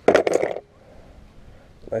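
A brief jingle of metal from the hook of a handheld digital fish scale, at the very start. After it comes a low, steady background.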